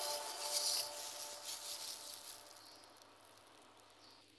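Plastic-gloved hand tossing and mixing sliced red chilies in a bowl: a rustling, rubbing sound that fades away over the first two seconds or so.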